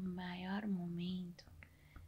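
A woman's voice making a drawn-out, hesitant 'hmm' while thinking over a question, which stops about a second and a half in. A faint click follows.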